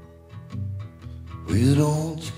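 Live band playing a country-rock song on acoustic and electric guitars, bass, drums and keyboard. It is soft at first over a pulsing bass, then about one and a half seconds in it swells louder as a held sung note comes in.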